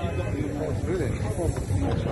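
Men's voices talking, the words unclear, over a steady low rumble.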